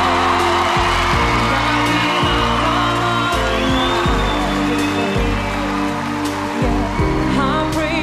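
A young man singing solo into a handheld microphone over a backing track, holding long notes with a wavering vibrato.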